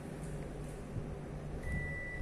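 Steady running noise of a Panasonic Eolia CS-E1238K split air conditioner's indoor unit, then, about one and a half seconds in, the unit gives one steady high beep: its receiver acknowledging a command from the remote control.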